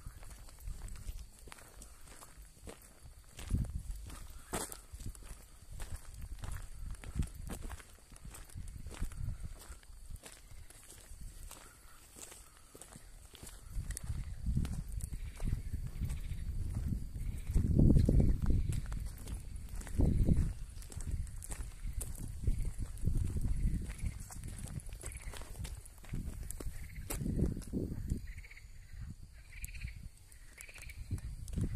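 Footsteps walking on a dirt path, with many short knocks and uneven low rumbles that are loudest in the second half.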